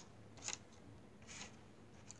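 Near silence, with two faint, short rustles, one about half a second in and one about a second and a half in.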